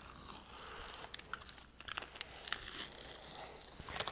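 Thick clear repair tape being peeled off a concrete block: faint crinkling with scattered small clicks.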